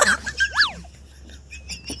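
A man bursting into loud laughter, ending about half a second in with a high squeal that rises and falls, followed by faint high wavering chirps.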